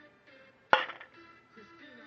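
A single sharp clink about three-quarters of a second in, as of a marble striking a hard surface, over faint background music.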